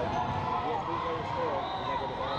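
Echoing gym sound during a youth basketball game: voices of players and spectators talking and calling out, with a basketball bouncing on the hardwood floor.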